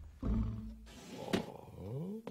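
Cartoon snoring from a sleeping man: a low, rasping snore early on, then a sharp click and a rising sound near the end.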